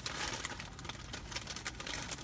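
Faint rustling and crinkling of a mailing envelope being handled and opened by hand, a scatter of small papery ticks.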